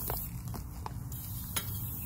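Gloved hands tearing apart a canna lily's tough root ball, with a few sharp snaps and crackles of roots and soil, the loudest about one and a half seconds in, over a steady low rumble.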